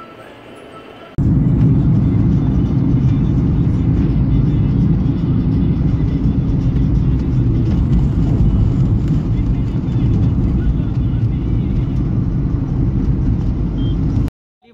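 Loud, steady low rumble of a car's road and engine noise heard from inside the moving car's cabin. It starts abruptly about a second in, replacing a faint background hum.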